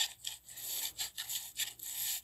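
A shovel digging into dry, gravelly soil, giving a quick run of short scraping strokes, several a second.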